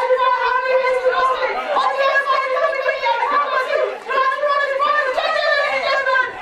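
Loud, high-pitched shouting voices, continuous with only brief dips, no words made out.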